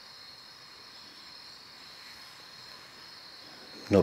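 Crickets chirring steadily in the night, a continuous high-pitched drone with no other sound until a man's voice starts at the very end.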